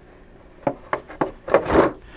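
A clear plastic blister package being handled and set down on paper magazines: three light plastic clicks, then a louder, brief scraping rustle near the end as it lands.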